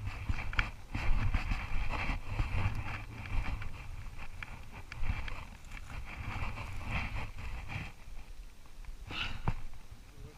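Footsteps on a gravel path and camera handling, a string of irregular crunches and clicks, with a low wind rumble on the microphone.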